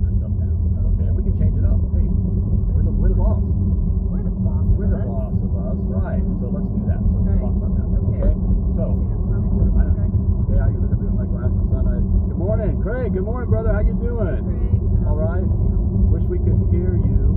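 Steady low road and engine rumble of a car being driven, heard from inside the cabin, with faint voices coming in near the end.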